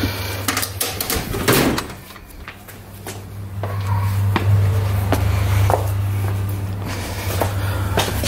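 Metal tools clattering and knocking as a tool chest drawer is rummaged, with scattered sharp clicks, over a steady low hum that grows louder about halfway through.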